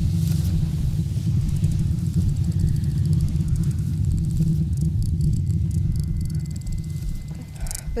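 A loud, steady low rumbling drone from the film's sound design, with a faint crackling hiss above it, holding a tense pause.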